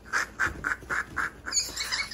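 A young girl's stifled giggling behind her hands: a run of short, breathy laughs, about four a second, then a higher-pitched voice near the end.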